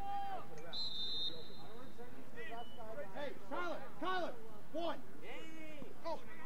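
Shouted calls from several voices across an open lacrosse field, none clear enough to make out, with a brief high steady tone about a second in.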